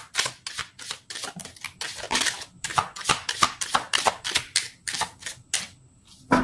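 Tarot cards being shuffled by hand: a fast, irregular run of sharp card slaps and flicks, about three or four a second, stopping shortly before the end.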